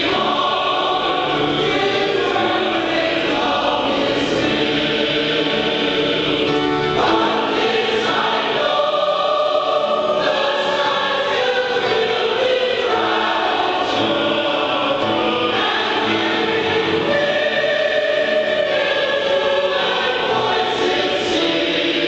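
Mixed choir of men and women singing a hymn arrangement in harmony, with long held notes.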